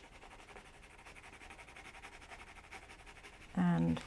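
Faint, rapid scratching of a water-soluble colouring pencil shading across watercolour paper. A woman's voice starts near the end.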